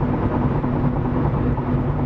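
Steady road noise inside a car cruising at highway speed: a constant hum of engine and tyres with a faint steady low drone.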